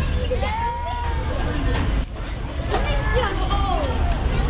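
Voices at a playground, children calling out in short rising and falling calls, over a steady low rumble of city traffic.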